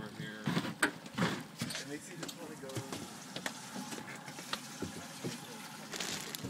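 Scattered knocks and clatter of handling aboard a fishing boat, most of them in the first two seconds, over water sloshing against the hull and faint muffled voices.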